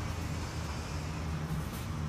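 Steady low rumble, like vehicle traffic or a running engine, with a faint hum in it.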